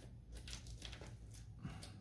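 Faint crinkling and rustling of a flexible aluminum foil dryer vent duct being handled.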